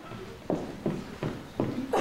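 Footsteps of hard-soled shoes and high heels on a stage floor: five evenly spaced steps, about three a second.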